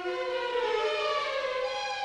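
Music from the film's score: several held tones sliding in pitch, some rising and others falling, like a siren-like glide.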